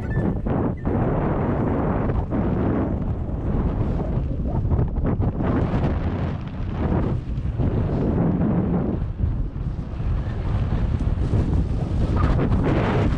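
Wind buffeting the microphone of an action camera on a mountain bike rolling along a paved road, a loud rumbling rush that swells and dips unevenly.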